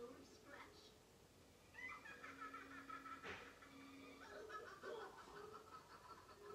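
Faint cartoon character voices playing from a television across a small room, starting about two seconds in.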